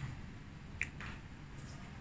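Small plastic squeeze bottle of liquid paint being handled: one sharp click a little under a second in, followed by a softer short sound.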